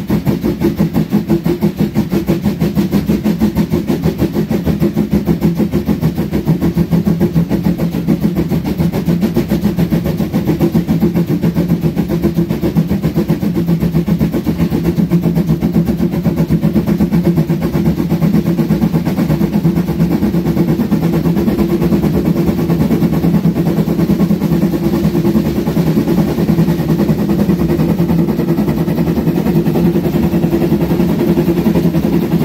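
Narrow-gauge steam locomotive 99 1781-6, a DR class 99.77–79 tank engine, running along the line, its exhaust beating in a fast, even rhythm, heard close up from the front of the engine.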